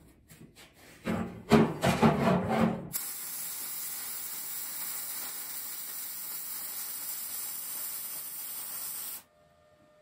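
A wire-feed (MIG) welding arc on the smoker's 1/4-inch steel: a steady hiss and crackle for about six seconds that stops abruptly. Before it, about two seconds of a louder, uneven sound that cuts off.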